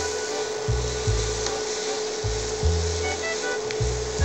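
Sliced bell peppers and onion sizzling in oil in a wok, stirred and scraped around the pan with a silicone spatula, over background music with a bass line.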